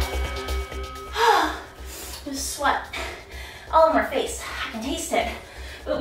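A woman gasping and panting hard for breath after a hard bodyweight-and-dumbbell conditioning set, in breaths about a second apart. Background music with a steady bass beat runs underneath.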